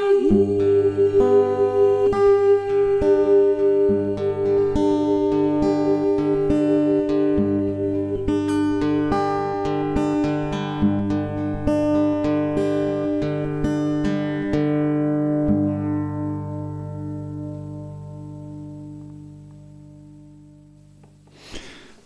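Acoustic guitar playing the closing bars of a song, a steady run of plucked notes that slows and fades away over the last several seconds.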